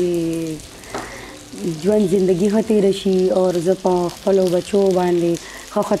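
A voice singing unaccompanied, with held notes and smooth melodic glides, breaking off about half a second in and resuming after about a second.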